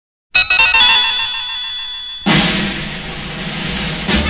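Opening of an orchestral march from a film score: a quick run of high notes settles into a held chord. About two seconds in, a loud percussive crash rings on under the full orchestra.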